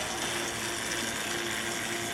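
Stationary spin bike being pedalled at about 100 rpm, its flywheel and drivetrain giving a steady mechanical whir.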